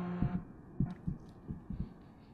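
Tail of the show's break music fading out: a low hum drops away, followed by soft low thumps, several of them in close pairs, as the sound dies down.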